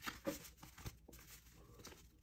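Faint soft swishes and ticks of trading cards being slid and flipped through the fingers, a few in the first second, then almost quiet.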